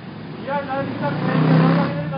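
A car passing close by on the street, its road noise swelling to a peak about one and a half seconds in and then easing off, over a man's voice.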